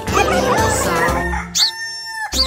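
A rooster crowing and hens clucking over the bouncy backing music of a children's song, ending in one long held crow.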